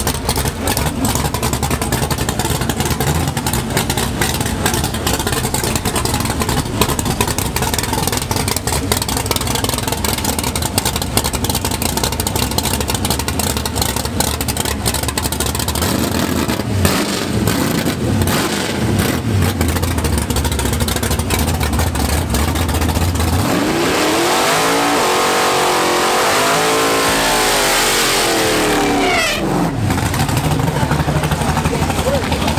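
Chevrolet Malibu drag car's engine running loud and steady, with a few blips of the throttle past the middle; about three-quarters of the way in it goes hard on the throttle, the revs climbing and then falling away as the car pulls off down the strip.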